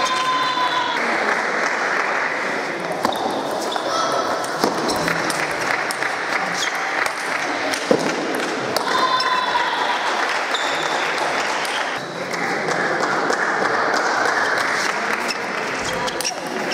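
Table tennis play in a large, echoing sports hall: the ball clicking off bats and table in short rallies, with a few short squeaks of shoes on the floor, over steady chatter from spectators and nearby tables.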